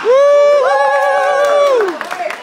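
Young voices whooping in celebration: one long held 'woo' joined about half a second in by a second, higher voice, both wavering and then dropping away near the end.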